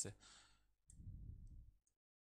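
Near silence with a few faint clicks from fingers tapping a touchscreen display to open a document sidebar, over a soft low rumble lasting about a second.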